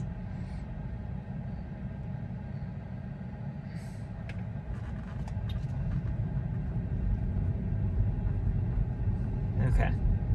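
Low road and tyre rumble heard inside a Tesla's cabin while it drives slowly, with no engine note; the rumble grows louder over the last few seconds as the car speeds up.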